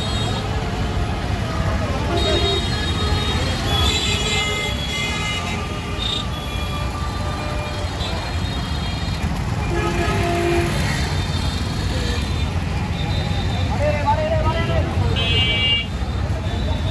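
Busy street traffic: three-wheeled CNG auto-rickshaw engines running under a steady low rumble, with vehicle horns tooting several times and background voices.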